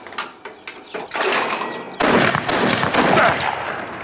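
A clay target thrower clicks faintly, then a matchlock harquebus fires: a rush of noise builds about a second in, and the loud shot comes about two seconds in, its noise lasting over a second as it dies away.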